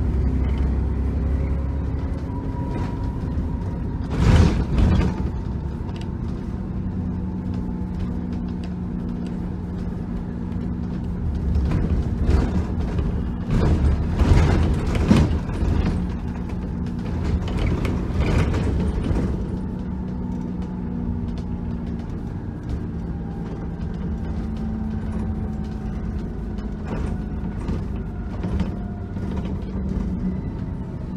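Bus interior on the move: the engine runs with a steady low drone while the bodywork and fittings creak and rattle, with bursts of sharper knocks and rattles about four seconds in and again over several seconds past the middle, as on bumps in the road.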